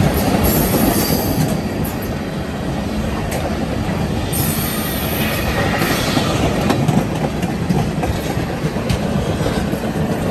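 Freight train of tank cars rolling past close by: a steady rumble of steel wheels on rail with scattered clicks over the joints. A faint high wheel squeal comes and goes, strongest around the middle.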